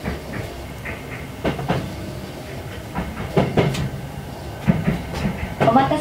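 Toyo Rapid Railway 2000 series electric train running, heard from inside the car: a steady low rumble with paired wheel clacks over rail joints and points, about a second and a half in, again about three and a half seconds in, and a few more near the end.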